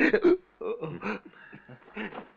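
A man laughing softly in short chuckles, loudest at the start and fading after about a second.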